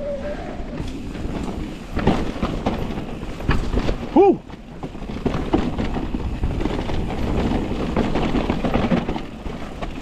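Mountain bike riding fast down a loose dirt forest trail: tyres on dirt and the bike rattling and knocking over roots and bumps. A short rising-and-falling pitched sound comes about four seconds in.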